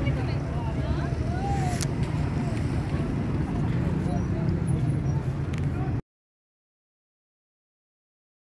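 Busy open-air market ambience: a steady low rumble with scattered voices and small knocks. The sound cuts out completely about six seconds in, leaving dead silence.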